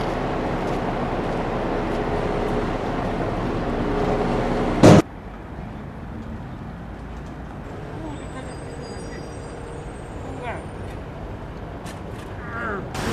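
City traffic noise with a motor vehicle running close by, slowly building, then a loud sharp bang about five seconds in. After the bang the sound drops to a quieter street background with faint high chirps.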